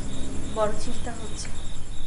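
Crickets chirping in a regular pulsed rhythm, a few chirps a second, over a steady low hum.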